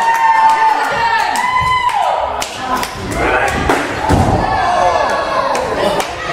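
Shouting voices in a wrestling venue, with one long, drawn-out yell in the first couple of seconds, and several sharp thuds of bodies or gear hitting the ring.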